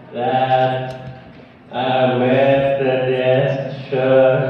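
A man's voice over a handheld microphone, drawn out in two long stretches at an almost unchanging low pitch rather than the rise and fall of ordinary talk, with a short break a little after a second in.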